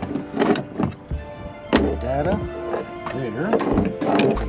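Background music with gliding melodic lines, over which come a few sharp knocks and clicks of small equipment and cables being handled, the loudest about half a second in and just under two seconds in.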